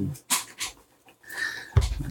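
Several short, breathy bursts of breathing or panting close to the microphone, with a low thump near the end.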